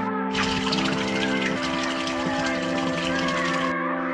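Water gushing and splashing from a stone fountain's spout. It cuts in just after the start and stops abruptly shortly before the end, over background music with long held notes.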